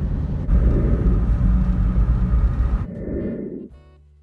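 Steady low road and engine rumble of a car driving at speed, heard from inside the moving car. Near the end the rumble drops away and music begins.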